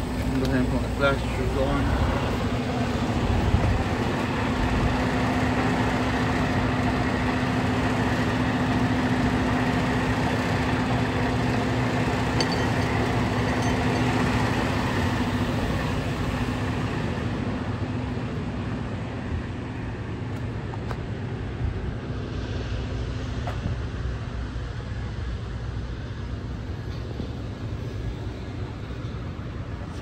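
Freightliner semi-truck's diesel engine idling with a steady drone, growing fainter a little past the middle and leaving a lower rumble.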